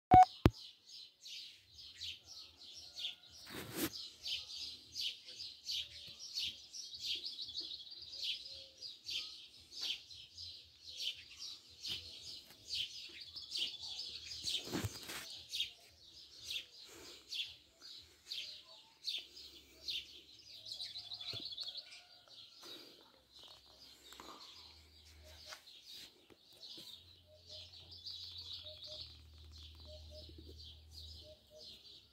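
Many small birds chirping and twittering in a steady, dense chorus. A sharp click comes at the very start, and two brief louder noises come about four and fifteen seconds in.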